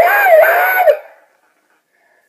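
A talking toucan repeat-back toy plays back a recorded phrase for about a second in a high-pitched, sped-up voice that sounds a little fuzzy.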